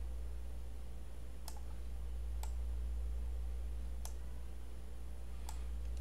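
Four faint, isolated computer mouse clicks, spaced a second or so apart, over a steady low hum.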